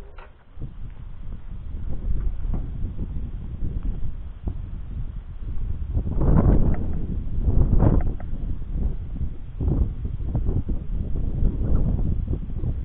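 Wind buffeting the microphone: a gusting low rumble that swells and fades, loudest in two gusts about six and eight seconds in.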